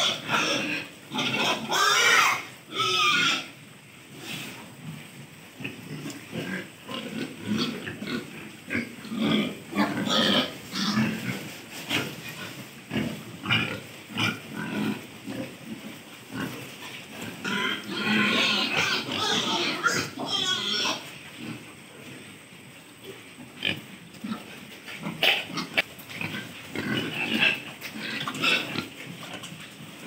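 A pen of pigs grunting as they crowd at feed, in a steady run of short, irregular grunts. Louder, shriller outbursts come near the start and again about eighteen to twenty-one seconds in.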